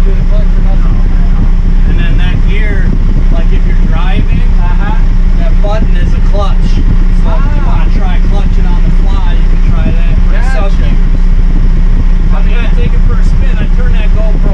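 Kioti RX7320 tractor's diesel engine idling steadily, heard from inside the cab.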